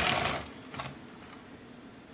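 Toy truck towing the plastic G3 trailer, pushed by hand and rolling on its small plastic wheels over a wooden surface: a short rattle that fades out within about half a second.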